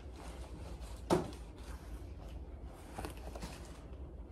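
Plastic packaging and fabric rustling softly as a shirt is taken out of its bag and unfolded, with one short sharp noise about a second in.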